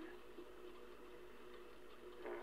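Faint steady hum and hiss from the background of a 1948 magnetic wire recording.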